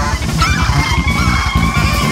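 Loud free-jazz/noise-rock band music: a high, held, slightly wavering tone enters about half a second in over a fast, dense pulse of drums and bass.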